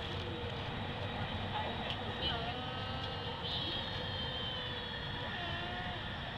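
Light-rail train running along the track, heard from inside the car: a steady running rumble with a faint constant hum, and a few faint higher tones rising and falling in the middle.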